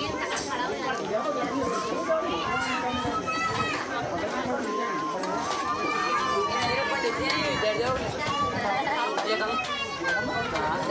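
Several people talking at once in overlapping chatter, no single voice standing out for long.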